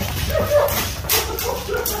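Men's startled yelps and short bursts of laughter, a few high cries broken by breathy, hissing outbursts.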